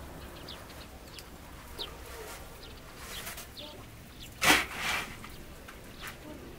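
Short, high bird chirps repeat throughout. About four and a half seconds in comes a loud, brief rush of noise, followed by a softer one, as a round of flatbread dough is laid onto the hot domed iron griddle over the wood fire.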